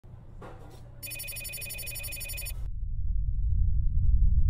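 An electronic ringing tone, trilling rapidly like a telephone, from about a second in until about two and a half seconds, then a deep rumble that swells and grows louder.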